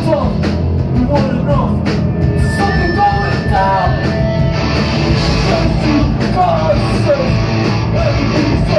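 Live punk rock band playing at full volume: distorted electric guitars, bass and drums in a continuous loud wall of sound.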